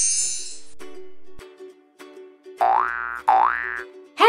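Logo-intro jingle: a high sparkling shimmer fades out in the first second, soft held notes follow, then two short sound effects rise in pitch, one after the other, near the end.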